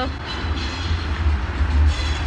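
Steady low rumble of busy city noise, with a faint high whine running over it.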